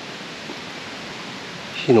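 Steady, even background hiss of outdoor ambience, with a man's short spoken syllable near the end.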